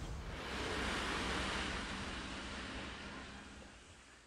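A rushing noise like wind or surf that swells over the first second and then slowly fades out, over a faint steady low hum.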